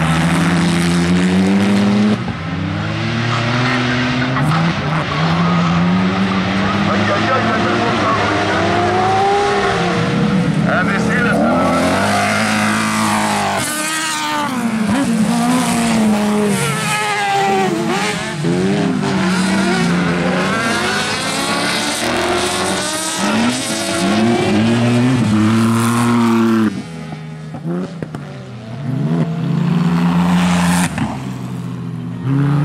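Racing buggy engines on a dirt track revving over and over, the pitch climbing and falling as the cars accelerate and slow. The engine noise drops away for a couple of seconds near the end.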